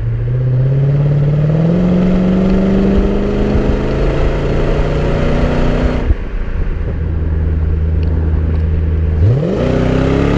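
1993 Chevrolet Corvette's V8 heard at the tailpipes of its X-pipe exhaust while driving. The engine note rises in pitch under acceleration for the first few seconds. It breaks off about six seconds in and comes back lower and steady, then revs up sharply near the end.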